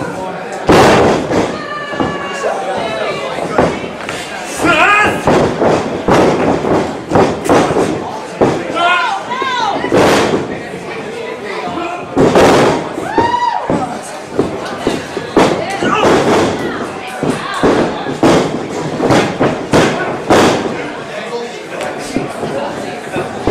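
Repeated heavy thuds and slams of bodies hitting a wrestling ring's canvas, mixed with people shouting and calling out between the impacts.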